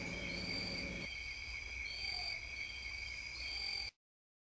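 Insects chirping: a steady high trill with a higher chirp repeating about every one and a half seconds, cutting off suddenly just before the end.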